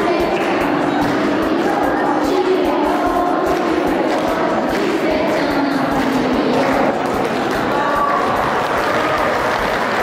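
A group of children singing together, clapping along.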